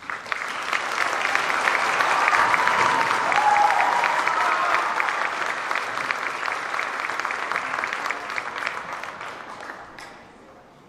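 Audience applauding as a string orchestra piece ends. The clapping starts abruptly, builds over the first few seconds and dies away near the end.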